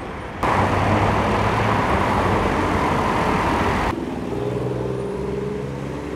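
Street traffic, broken by a loud, even rushing noise that starts abruptly about half a second in and cuts off just before four seconds, followed by an engine running steadily.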